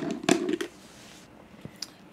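Plastic screw-on lid being twisted off a wide-mouth glass fermenter jar: light clicks and scrapes of the threads, with a single sharp click near the end as it comes free.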